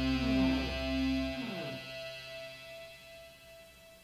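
The last chord of a punk rock song ringing out on guitar and bass, several notes sliding down in pitch in the first two seconds. The bass stops about a second and a half in and the guitar dies away to a faint ring by the end.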